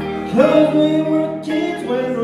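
Live band music: a man singing a slow ballad over electric guitar and keyboard, a new sung phrase sliding up into its note about half a second in.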